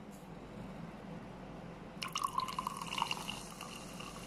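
Carbonated soda poured from a can into a glass mug half full of liquid, splashing and gurgling into it, starting about halfway through.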